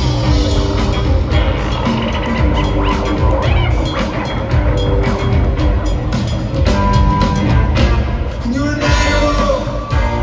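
A live rock band plays an instrumental passage with drums, bass, electric guitars and keyboards, recorded from the audience in a large concert hall.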